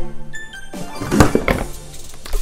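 A Game Boy dropped into a small cardboard box: a thunk with some rattling and rustling about a second in, over background music.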